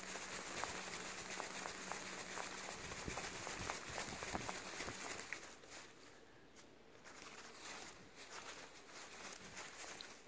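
Blue-and-gold macaw flapping its wings hard in place while perched, a faint rapid fluttering of wingbeats that eases off and quietens a little past halfway.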